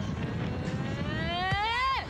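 A spectator's long, drawn-out jeering shout, 'Eeeeeh!', rising steadily in pitch as it builds toward an insult at the goalkeeper.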